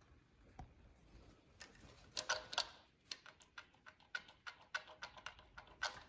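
Faint, irregular metallic clicks and light clatter of a Mercedes M117 V8's timing chain and sprockets as the chain is worked by hand to feel its slack, which is more than it should be. The clicks come closer together from about two seconds in.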